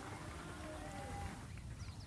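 Faint outdoor ambience of an open-air sports ground, with a few thin, faint calls or chirps over a low steady background.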